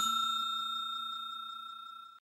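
Notification-bell ding sound effect ringing out and fading away evenly, with a fast slight flutter in its tone.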